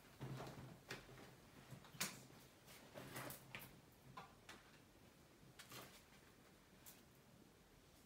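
Faint, irregular light taps and clicks of a dropped tarot deck being gathered up and handled, scattered through the first seven seconds.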